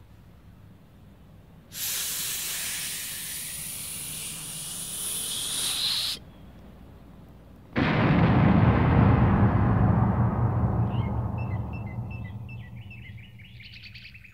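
Comedy-record sound effects of a lit stick of dynamite: a hissing fuse burns for about four seconds, then after a short silence a loud explosion rumbles and slowly dies away. A few cartoon-like bird chirps come near the end.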